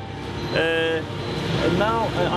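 Steady street traffic noise, with a short flat-pitched tone about half a second in.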